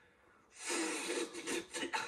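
A raspy, breathy blowing sound about a second and a half long, starting about half a second in: a voice acting out mouth-to-mouth rescue breaths.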